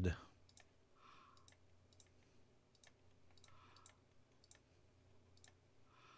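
Faint computer mouse clicks, a dozen or so at irregular intervals.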